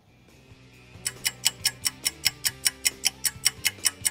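Ticking clock sound effect, fast and even at about five ticks a second, starting about a second in over soft music with held notes: a time-passing transition into the next day.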